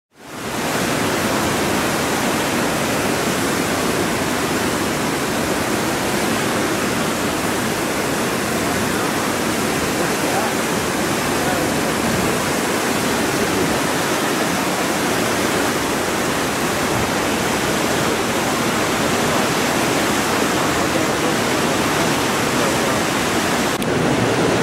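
Whitewater of the Kootenai River's falls and rapids rushing: a steady, even noise that fades in within the first half second and holds unchanged.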